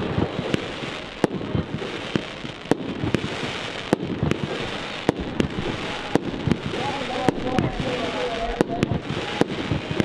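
Aerial fireworks bursting overhead: a string of sharp bangs at irregular intervals, roughly two a second, over a continuous noisy background.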